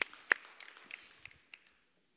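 Two sharp hand claps about a third of a second apart, the second the louder, then a few fainter claps that die away within about a second and a half.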